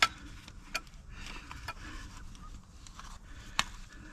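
Gloved hands working a wiring connector through a tight rubber boot: faint rubbing and handling noise with a few sharp clicks, the loudest at the very start and about three and a half seconds in.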